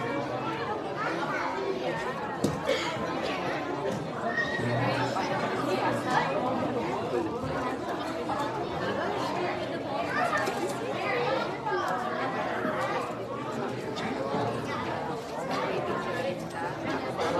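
Chatter of many children and adults talking over one another at once, with no single voice clear, in a large room.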